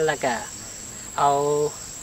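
Steady high-pitched insect buzz in a field, running under short phrases of a man's speech.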